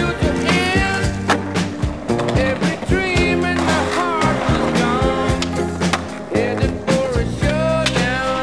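Skateboard sounds mixed under a soundtrack song with a singer and a steady bass line. Several sharp knocks of tail pops and landings come through, along with trucks grinding on a ledge and a handrail.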